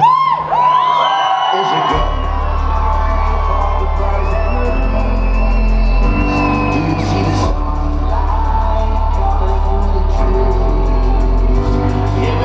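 Live electronic dub music through a club PA: gliding high tones open, then a deep bass line comes in about two seconds in under sustained synth notes and a beat.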